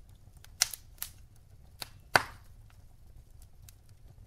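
Wood logs burning in a fireplace, crackling with four sharp pops, the loudest about two seconds in.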